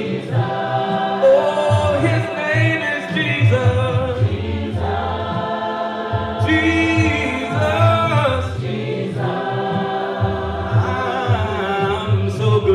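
A cappella gospel singing: several voices in harmony, with a man's voice amplified through a microphone, holding long notes and sliding between them.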